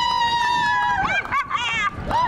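A high-pitched human voice holding a long shrill note that slowly sinks, then breaking into short wavering calls about a second in.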